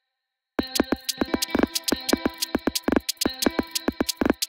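Electronic beat played back from FL Studio, starting about half a second in after a brief silence. A held synth pad chord sounds under a dense, fast run of sharp percussive hits.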